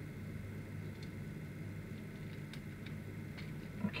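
A few faint, scattered clicks of small plastic action-figure parts being handled and fitted together, over a low steady background hum.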